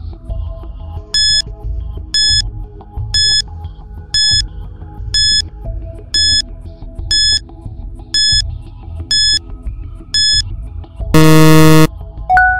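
Quiz countdown timer ticking down with ten short high beeps, one a second, over background music. It ends near the end with a loud, low buzzer about a second long as time runs out.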